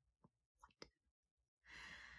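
Near silence, broken by a few faint short clicks and then a soft sigh-like breath from a woman near the end.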